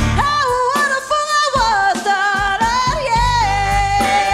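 Live band music with a singer: a wavering, runs-and-vibrato vocal line over thin backing that drops its bass briefly in the middle, then settles into a long held note as the full band comes back in near the end.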